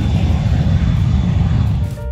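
Business jet's engines running as it rolls along the runway: a loud, steady low rumble with a faint high whine. It cuts off just before the end, where piano music comes in.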